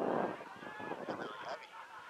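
Wind buffeting the microphone, dying away within the first half second, then several faint, short, high-pitched calls far off.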